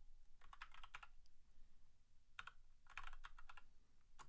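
Faint typing on a computer keyboard: a quick run of keystrokes about half a second in, then another run from about two and a half to three and a half seconds.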